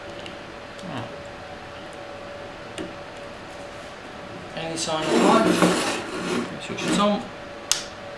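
Bench handling noise: a crimped spade connector pushed onto a lead-acid battery terminal, then a few seconds of clatter and scraping as a metal-cased power inverter is moved on the bench, and a sharp click near the end as its power switch is flipped on. A faint steady tone runs underneath.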